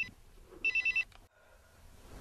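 Cordless home phone ringing with an electronic trill: the tail of one ring as it opens, then one more short burst about half a second in, then it stops.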